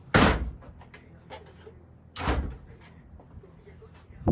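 Two loud bangs about two seconds apart, each dying away within half a second.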